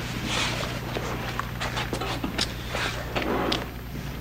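People shifting about on a hard rehearsal floor: shuffling, rustling and scattered taps and clicks, over a steady low electrical hum.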